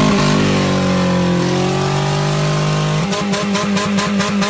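Car engine revving hard: a held note that sags a little and climbs again, breaking into a fast, even pulsing about three seconds in.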